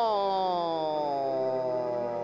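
A synthesizer tone sliding slowly down in pitch like a siren winding down, fading slightly as it falls. It is a keyboard pitch-bend effect leading into the band's next cumbia number.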